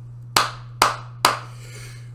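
Three sharp hand claps, about half a second apart.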